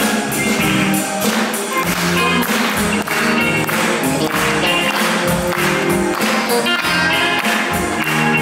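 A live band playing, led by a drum kit whose drums and cymbals keep a steady beat.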